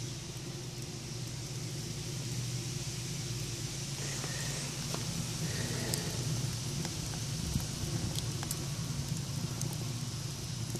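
Wood burning in a rocket heater's feed tube: a steady low rumble from the firebox draft, with a few sharp crackles from the burning wood.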